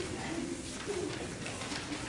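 Faint murmur of voices over room noise, with short low-pitched fragments of talk.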